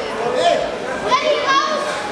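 High-pitched voices shouting and calling out across a large sports hall, children's voices among them, with no words made out.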